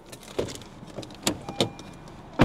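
A car's driver door being unlatched and pushed open: a few sharp clicks from the handle and latch, with a brief faint beep near the end.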